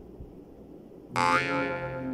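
A twangy comedic 'boing' sound effect, starting suddenly about a second in and ringing on with a bending pitch.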